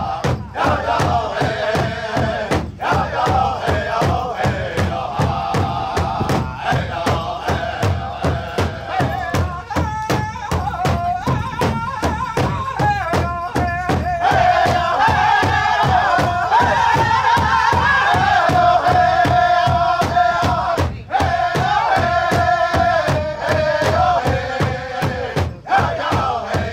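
Powwow drum group performing a women's traditional contest song: several men strike one large shared drum with sticks in a steady beat under high-pitched unison chanting. The singing grows louder about halfway through.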